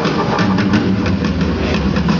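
Jazz-funk band playing live, with a drum kit and double bass: rapid drum and cymbal strokes over a dense, heavy, rumbling low end, loud enough to sound overloaded on the recording.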